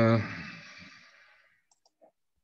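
A man's drawn-out hesitation "uh", held steady and then trailing off over the first second and a half. A few faint clicks follow near the end.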